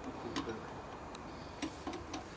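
A few sharp, irregular metallic clicks from hand tools as men work on a pickup truck's rear wheel.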